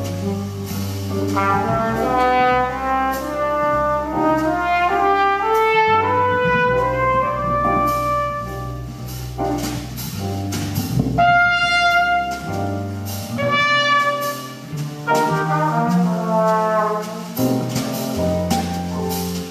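Jazz trumpet improvising on a slow ballad: quick climbing runs in the first half, then longer held notes, over low sustained bass notes.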